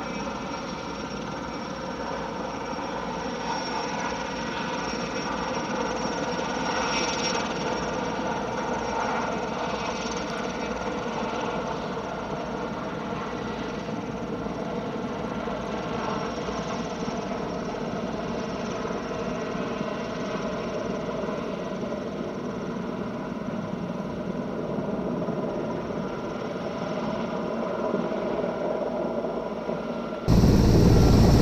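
Sikorsky S-64 Skycrane heavy-lift helicopter hovering, its turbines and rotor making a steady drone with several held tones.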